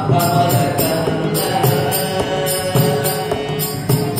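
Tamil devotional bhajan: a male voice sings a chant-like melody over sustained harmonium notes, with a mridangam keeping an even rhythm of strokes.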